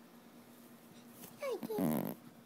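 A short whining cry near the end, sliding down in pitch and then holding lower for a moment.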